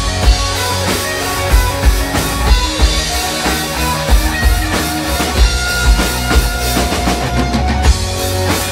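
Live country-rock band playing an instrumental passage: an electric lead guitar solo on a single-cutaway guitar over a steady drum-kit beat and bass.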